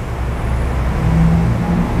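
Low rumble of a motor vehicle engine running, with a low hum coming in and growing a little louder in the second half.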